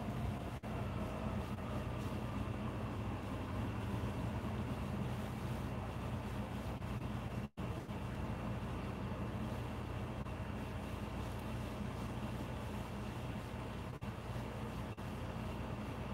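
Steady room hum of a window air conditioner running, even and unchanging, with the sound cutting out for an instant about seven and a half seconds in.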